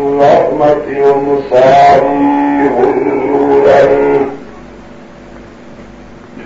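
A voice chanting a melody in long held notes that step from pitch to pitch, stopping about four seconds in; a low steady background noise remains after it.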